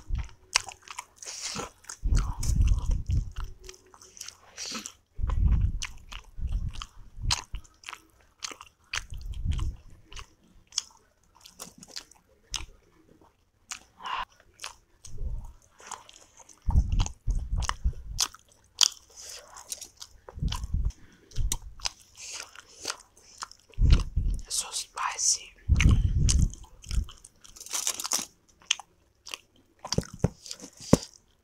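Close-miked chewing of soft steamed momos (dumplings): moist mouth sounds and small clicks in uneven bouts, with short pauses between mouthfuls.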